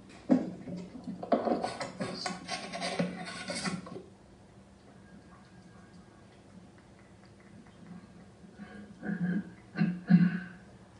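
Rustling and clattering handling noise on a microphone for about four seconds, then only a faint steady hum.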